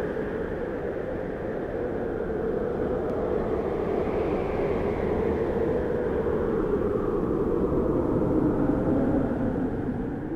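A steady rushing, rumbling noise that swells slowly and then fades out near the end.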